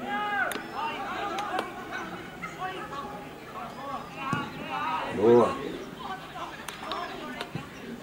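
Men's voices shouting and calling to each other during a football match, overlapping and unclear, with one loud drawn-out shout about five seconds in.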